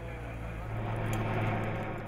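Outboard motor of an inflatable rescue boat running at speed, a steady drone that grows a little louder about a second in.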